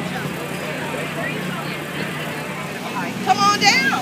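Portable generator running steadily with a low hum under crowd chatter. A high-pitched voice speaks loudly near the end.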